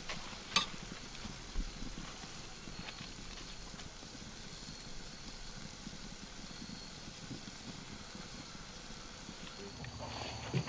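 Sausage and pepper slices sizzling faintly in a steel pan on a grill, with a sharp clink of the metal spatula against the pan about half a second in and a lighter one a second later.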